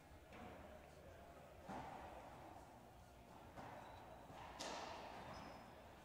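Near silence in an indoor racquetball court between rallies: faint room ambience, with a soft thud about four and a half seconds in that fades away over about a second.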